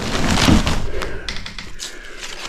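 Plastic packaging of a bundle of kraft-faced fiberglass batt insulation rustling as the bundle is heaved up, with a few knocks and bumps in the second half.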